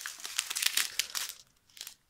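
Small clear plastic bags of diamond-painting resin drills crinkling as they are picked up and handled, for about a second and a half, then one short rustle near the end.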